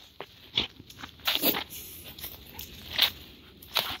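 Irregular crunching footsteps on dry leaf litter and twigs, a few scattered steps rather than a steady rhythm.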